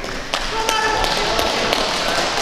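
Voices of people in a large sports hall, with several sharp taps.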